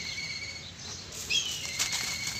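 Hands squishing and squeezing wet charcoal-ash paste, with short wet crackles and clicks. A bird gives a short falling chirp about halfway through.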